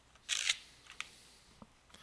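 A sheet of paper slid by hand across a desk: a brief rustling scrape, then a single light click about a second in.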